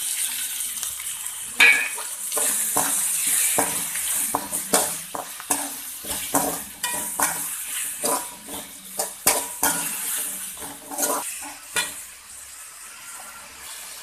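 Chopped tomatoes and onions frying and sizzling in hot oil in a pan while a perforated steel spatula stirs them, knocking and scraping against the pan many times. The sizzle eases off near the end.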